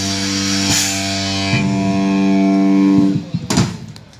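A rock band's held closing chord on electric guitar and bass through Marshall amps, ringing out with cymbal crashes, ended by a final loud drum hit about three and a half seconds in, after which the sound drops away.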